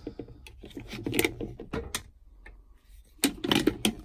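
Plastic-bodied quick-grip bar clamps being handled and laid down on a wooden workbench: a scatter of light clicks and knocks, coming thicker near the end.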